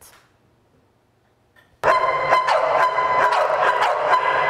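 Near silence for about the first two seconds, then an abrupt, loud, dense din of many dogs barking at once in an echoing shelter kennel room.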